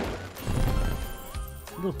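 Online slot game audio: a sparkling burst fading out as a bomb multiplier lands, then the game's background music under a big-win count-up.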